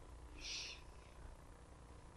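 Near silence: room tone, with one brief faint hiss about half a second in.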